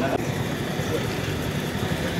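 A steady low hum, like an idling engine, under faint murmur of a gathered crowd.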